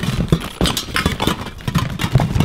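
Metal aerosol cans and hard zippered cases of sneaker protector clattering and knocking together in a cardboard box as a hand rummages through them, a quick run of sharp knocks and rattles.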